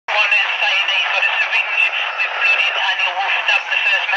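Continuous speech, thin and tinny with no low end, the words indistinct.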